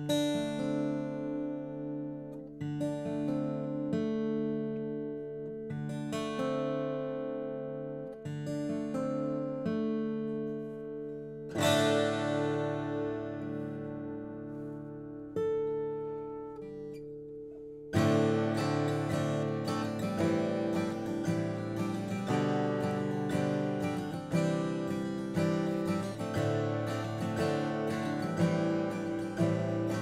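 Martin D-35 steel-string dreadnought acoustic guitar playing an instrumental intro: single strummed chords left to ring out, a new one every two seconds or so. About 18 seconds in, a steady, busier strumming rhythm takes over.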